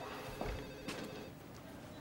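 A telephone ringing faintly in the background, the ringing fading out a little past halfway, with two light clicks in the first second.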